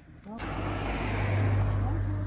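Motor vehicle on the move: a steady low engine hum with road and wind noise, starting suddenly about half a second in and growing louder.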